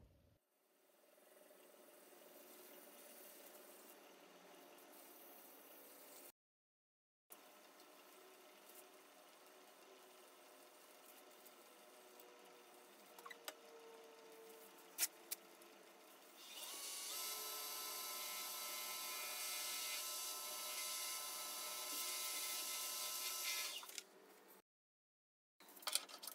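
Faint steady hum of a Laguna Revo 18|36 lathe in a shop, with a few light clicks just past the middle. About two-thirds in, a louder steady electric motor whine with several fixed high tones takes over as the lathe spins the bowl.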